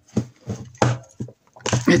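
Short bursts of effortful grunting and muttering from a man straining, mixed with scuffing and rubbing of a tight rubber bumper case being stretched over a rugged smartphone's corners.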